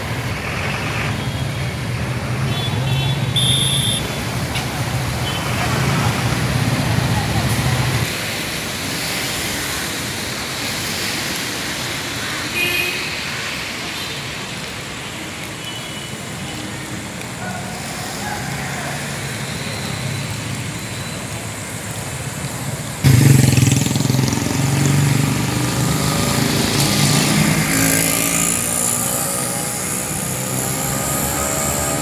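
Road traffic on a flooded street: car, autorickshaw and motorbike engines running as they drive through standing water, mixed with indistinct voices. The sound gets louder about two-thirds of the way through.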